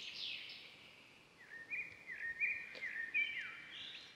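Birdsong: a run of high chirps and short whistled notes, some stepping up and others falling, over a faint outdoor background hiss.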